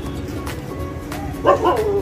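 A dog gives a short yelping bark with a bending, whining pitch about one and a half seconds in, over music playing.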